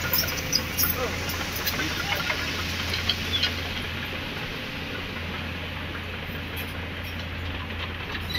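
A vehicle engine idling steadily, a low hum under the scene, with people's voices talking around it in the first few seconds.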